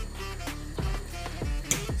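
Background music with a steady, deep drum beat.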